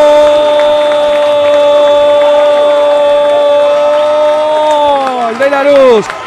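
Radio football commentator's long held goal cry, one sustained shouted vowel at a steady high pitch that falls and tails off near the end.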